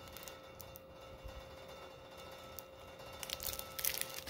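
Quiet room tone with a faint steady hum, then light crinkling and clicks from the plastic wrapper of a sealed trading-card pack handled in gloved hands, starting about three seconds in.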